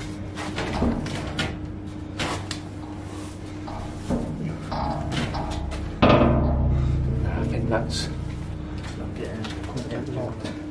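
Knocks and scrapes against a metal door, with a sudden loud bang about six seconds in that rings and fades over a second or two.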